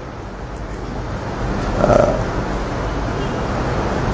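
Steady background noise with a low, even hum during a pause in speech, and a faint short vocal sound about two seconds in.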